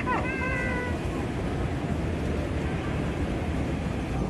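A toddler's short, high-pitched vocal squeal: a quick drop in pitch, then a held, slightly falling note lasting about a second. It sits over the steady low rumble of a moving walkway.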